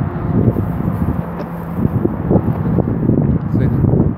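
Strong wind buffeting the microphone: a loud, uneven low rumble that swamps most other sound.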